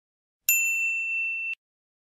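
Notification-bell sound effect: a single bright ding starting about half a second in, ringing steadily for about a second and then cut off sharply.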